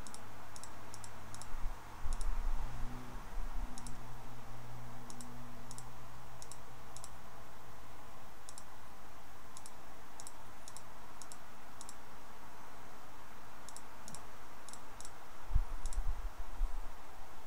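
Computer mouse buttons clicking, often in quick pairs, at an uneven pace as number keys are clicked one by one on an on-screen calculator. A low rumble sits under the first few seconds.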